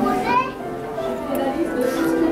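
Background music playing over the chatter of shoppers, with a child's voice rising briefly near the start.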